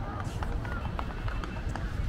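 Footsteps on a paved promenade, a run of short sharp steps, over a steady low outdoor rumble, with snatches of people's voices in the background.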